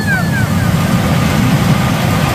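Pachinko machine and parlour din: a loud, steady, dense rumble with a few falling electronic tones in the first half second.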